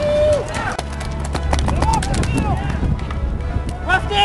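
Paintball markers popping in scattered shots across the field while players shout to each other, over a low steady hum.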